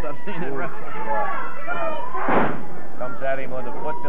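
A single loud slam from the wrestling in the ring, about two seconds in, amid voices: a blow or a body landing on the ring.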